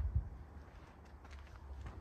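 Low, faint rumble of a Toyota LandCruiser 79 series 4.5-litre V8 turbo diesel idling, with a few light footsteps on pavement.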